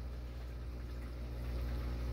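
Steady low hum of aquarium equipment with a faint even wash of moving water.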